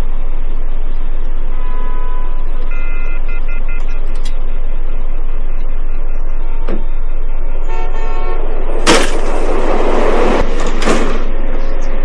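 City street traffic with car horns honking several times, in short toots in the first few seconds and again near eight seconds. Then two loud bangs, about two seconds apart, near the end.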